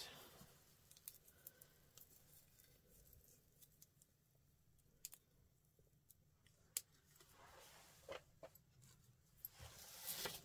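Near silence, with faint scattered clicks and rustles from hands handling and twisting the end of a jute rope. The clicks come closer together near the end.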